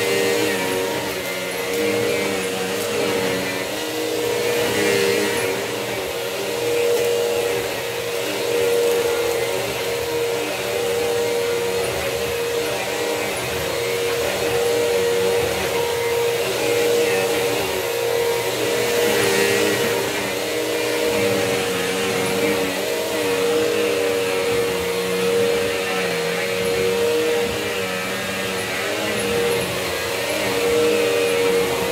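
Bissell CleanView multicyclonic upright vacuum cleaner running with a steady motor whine, its loudness swelling and dipping every couple of seconds as it is pushed back and forth across the floor.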